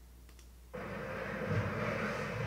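Near silence, then about three-quarters of a second in the soundtrack of the music video's intro starts suddenly: a steady low rumble with slow swells in the bass.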